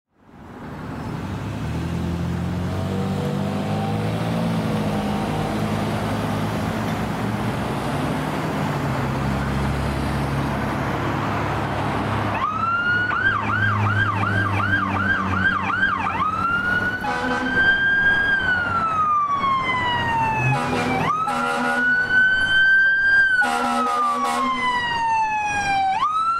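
A diesel fire-engine motor rumbles as the truck approaches. About twelve seconds in, its electronic siren starts in a fast yelp. It then switches to a slow rising-and-falling wail, broken by several horn blasts.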